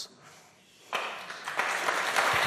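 Audience applause: clapping starts about a second in and builds.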